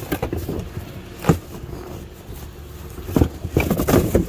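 Metal engine parts clicking and knocking as they are handled, with one sharp knock about a second in and a cluster of clicks near the end, over a low steady rumble.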